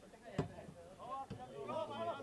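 Faint voices of players calling out on the pitch of a football match, with a single dull thud about half a second in.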